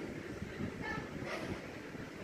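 Low, uneven rumbling background noise with a few faint short high tones about a second in.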